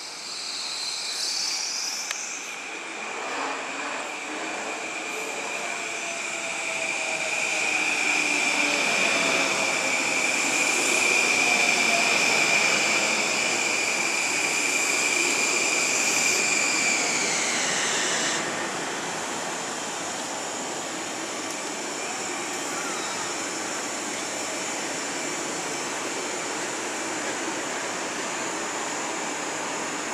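An LIRR M-9 electric multiple-unit train with AC propulsion pulls in and brakes to a stop. Motor tones fall in pitch as it slows, over a steady high whine that grows louder, then glides down and cuts off about eighteen seconds in as the train halts. After that the standing train gives a steady rushing hum, and insects chirp briefly at the very start.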